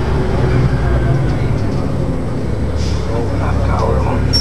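City bus engine running with a steady low drone, heard from inside the passenger cabin, with faint passenger voices near the end.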